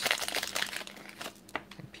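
Paper wrapper of a 1992-93 Topps basketball card pack crinkling and tearing as it is peeled off the cards. The crinkling is densest in the first second, then thins to scattered rustles as the cards are handled.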